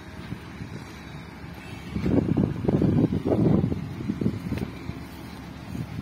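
Wind buffeting a phone's microphone in irregular gusts, loudest from about two to four seconds in, over a steady low background rumble.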